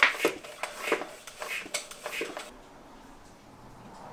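A string of light, irregular clicks and taps as a mountain bike wheel and its tire are handled, stopping about halfway through.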